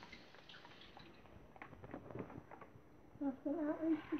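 Faint drips and small splashes of water from a fish net lifted out of a plastic bucket, with a few light clicks. A child starts talking near the end.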